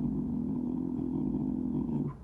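A man humming a low, steady note, which cuts off suddenly near the end.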